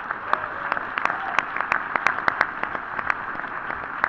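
Audience applauding, with a run of louder individual claps standing out in the middle.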